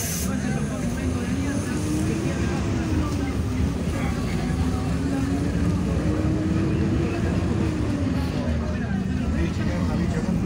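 City bus running along the street, heard from inside the cabin: a steady low rumble with an engine drone that rises and falls in pitch as the bus speeds up and slows, climbing in the first few seconds, dipping around four seconds in, rising again and falling near the end.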